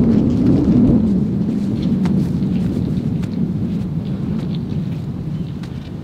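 Wind buffeting the camera microphone: a steady low rumble that eases slightly toward the end, with a few faint ticks over it.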